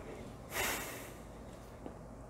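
A man's single short, sharp breath through the nose, about half a second in, close to a lapel microphone.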